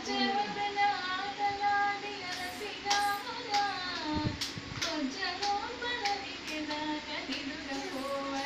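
A song with high-pitched singing in a flowing melody of held and sliding notes, with a few sharp clicks scattered through it.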